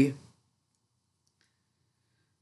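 A few faint clicks of knitting needles being worked, about a second and a half in.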